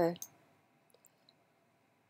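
A short spoken "okay" followed by one sharp click and, about a second later, two faint ticks.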